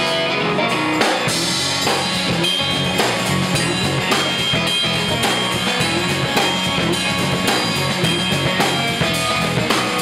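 Live band playing a song's instrumental intro on electric guitar, electric bass and drum kit, with a steady drum beat.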